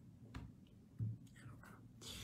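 Faint sounds from a man's mouth and breath, with a soft click early and a short, low vocal sound about a second in.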